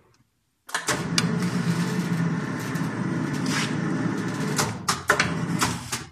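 Pipe-bending machine at work on a thin pipe: a steady motor hum starts abruptly about a second in and cuts off just before the end, with sharp metallic clicks and knocks over it.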